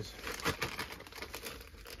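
Plastic bag crinkling as it is handled, a run of small irregular crackles with one louder crinkle about half a second in.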